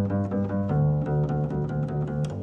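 Double bass played with the bare fingers, setting out a slow jazz bass line of long, held low notes that moves to a new note about a third of the way in.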